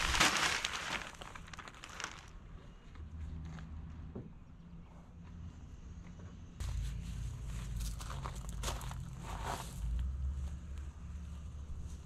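Potting soil pouring from a plastic bag into a concrete urn planter, with the bag crinkling, loudest in the first two seconds. After that, quieter rustling and handling noises over a low rumble.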